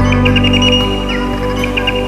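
Relaxation music in a new-age, ambient style: sustained synthesizer tones with quick runs of short high chirps layered over them.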